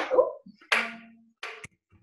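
Handling noise from a lightweight woven-fiberglass tube light being lifted and moved: a brief rustle-like sound under a short low hum, then a short clatter ending in a sharp click.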